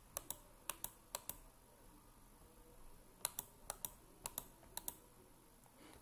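Faint clicks of a computer mouse and keyboard, many in quick pairs, in two short runs with a pause of about two seconds between them.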